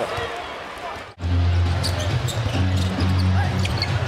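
Basketball game court sound: a ball bouncing on the hardwood amid arena noise, with steady low bass notes of arena music underneath. The sound drops out briefly at an edit just over a second in.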